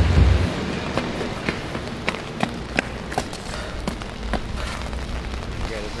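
Steady rain on wet pavement, with scattered sharp ticks. A loud low hum cuts off about half a second in.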